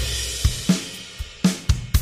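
Logic Pro X Drummer playing a beat on the SoCal acoustic drum kit, with kick, snare and hi-hat. The Randomizer MIDI effect varies at random how hard each hit is struck.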